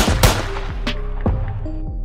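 A gunshot and a blade-slash sound effect come together right at the start, then background music with a steady beat runs on.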